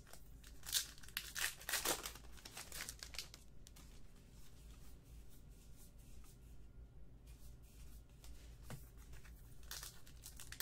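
Paper-and-plastic rustling of trading cards being handled and a 2017 Topps Archives baseball card pack wrapper crinkling. It comes in short bursts in the first few seconds and again near the end, quieter in between.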